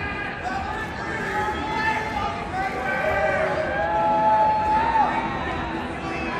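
Voices of a crowd talking, with one voice held on a long note about four seconds in that drops away at its end.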